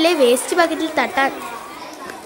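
A group of children shouting and calling out in high voices, short overlapping cries that thin out over the last half second.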